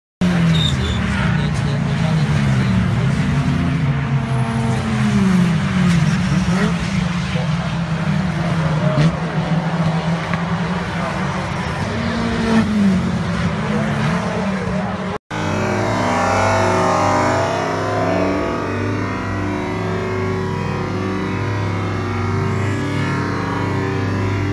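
Several racing cars' engines passing at speed on a circuit, their pitch rising and falling repeatedly as they go by. After a sudden cut about 15 seconds in, music plays instead.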